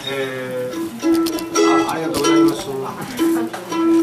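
Acoustic guitar plucked in single notes, the same note struck several times and left ringing.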